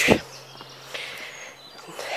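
Quiet outdoor background: a soft, even hiss with a few faint, brief high chirps of birds.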